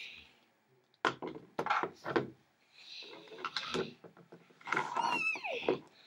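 Plastic model horses knocking and scraping on a wooden floor as they are handled, with a cluster of taps a second or so in. Near the end a brief high voice slides down in pitch.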